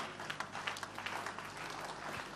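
Scattered, irregular hand claps from a church congregation, fairly faint, over a low murmur of the crowd.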